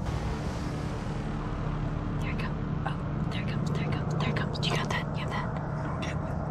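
Hushed whispering, starting about two seconds in, over a low steady rumble.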